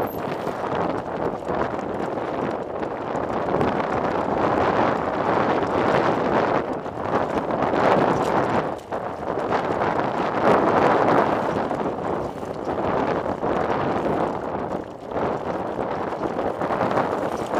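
Continuous crunching and rattling of travel over loose rock on a rocky trail, with wind on the microphone. It is loud throughout and swells and dips unevenly.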